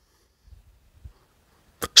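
Near silence, broken near the end by one brief, sharp click just before speech resumes.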